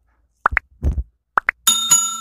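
Sound effects of a subscribe-button animation: two pairs of quick rising pops as the buttons are clicked, then a bright bell ding about one and a half seconds in that rings on and slowly fades.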